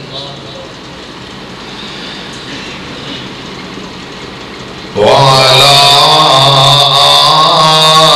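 About five seconds of quiet, even background noise, then a man's voice starts a loud chant, sliding up into one long held note.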